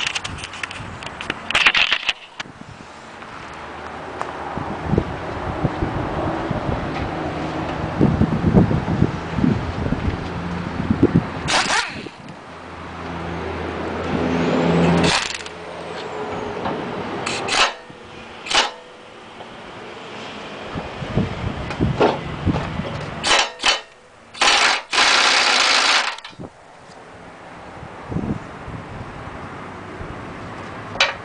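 Pneumatic impact wrench hammering the blade bolts loose on a riding mower's cutting deck, in long rattling runs through the first half. Later come several short, sharp hissing bursts from the air tool.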